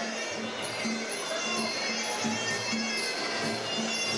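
Muay Thai sarama fight music: a reedy, nasal Thai oboe (pi chawa) melody over a steady drum beat.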